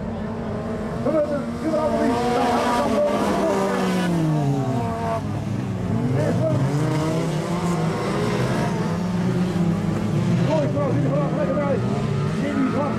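Several race cars' engines revving on a dirt track, their pitch sweeping down and up again as they lift off, accelerate through the gears and pass by.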